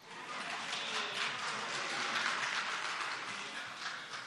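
Applause from a roomful of people, starting suddenly and easing off near the end.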